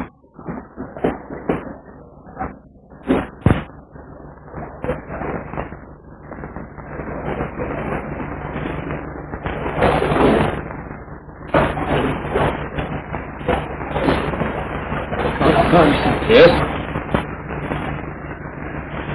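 A few sharp knocks, then indistinct voices and low noise over the hum of an old film soundtrack.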